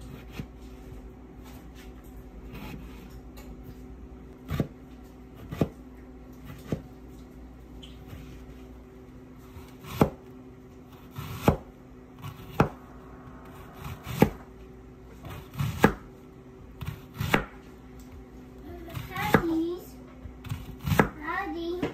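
Chef's knife cutting through a tomato and then an onion on a plastic cutting board: separate sharp knocks of the blade hitting the board, irregular and roughly a second apart, over a steady low hum.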